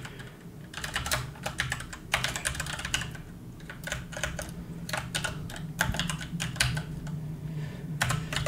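Computer keyboard keystrokes: typing in quick irregular runs, with a short pause about three seconds in.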